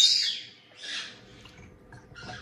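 Parrot chicks giving harsh, hissing begging calls: a loud call at the start that fades within half a second, then a shorter, weaker one about a second in.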